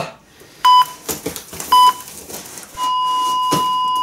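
Hospital heart-monitor sound effect: two short beeps about a second apart, then a continuous flatline tone from nearly three seconds in, signalling that the 'patient' has died. A few faint knocks come between the beeps.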